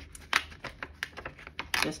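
Frosted laminated vellum envelope crackling in the hands, a quick irregular run of small sharp clicks, as a finger is run through the back to pull the clinging layers apart and open the pocket.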